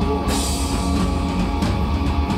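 Live rock band playing loud, with the drum kit prominent.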